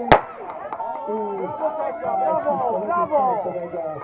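A single sharp crack of the race's start signal, right on the end of the countdown. It is followed by many voices shouting and cheering as the runners set off.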